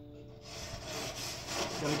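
A grill brush scrubbing a metal grill grate with quick back-and-forth strokes, starting about half a second in, to clean the grate before cooking.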